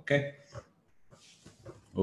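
Speech only: a man says "okay", then a short pause with faint room noise.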